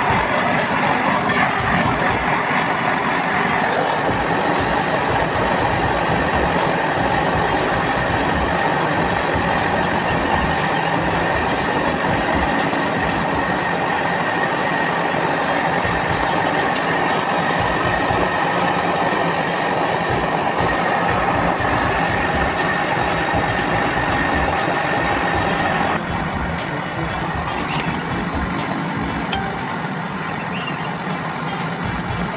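Portable butane cartridge torch burning with a steady hiss, used to heat the copper pipework of an air-conditioner condenser for brazing. The sound drops a little and changes about 26 seconds in.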